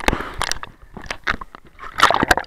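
Water splashing and bubbling against a waterproof action camera as it goes in and out of the surface, heard as a rapid, irregular string of sharp crackling pops.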